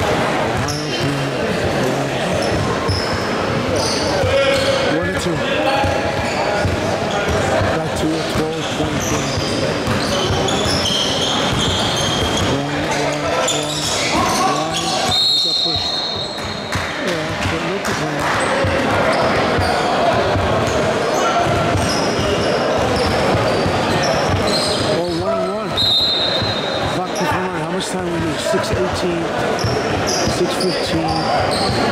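A basketball bouncing on a hardwood gym floor, with players' and spectators' voices echoing around the hall. Two brief high-pitched tones sound, one about halfway and one near the end.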